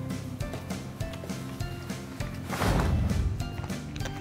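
Light background music with notes changing every fraction of a second, and a brief rushing swish about two and a half seconds in, the loudest moment.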